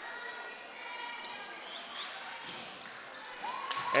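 A basketball bouncing a few times on the gym floor in a quiet, echoing gymnasium: a player's dribbles at the free-throw line before the shot. A faint steady tone comes in near the end.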